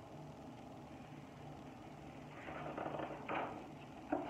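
Quiet room tone with a faint low hum, then paper rustling as a large picture book's page is turned, about two and a half seconds in, ending in a short sharper rustle.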